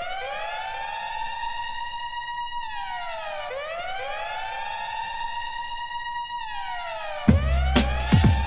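A siren sound effect opening an electronic flash house dance track: it rises, holds, and falls twice in slow cycles, each glide doubled by an echo. About seven seconds in, a heavy beat with deep bass comes in under it.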